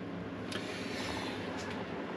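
Low, steady background hiss with a couple of faint light clicks from the camera being handled as it pans into the trunk.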